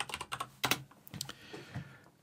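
Computer keyboard typing: a quick run of keystrokes as a web address is entered, thinning to a few fainter key clicks.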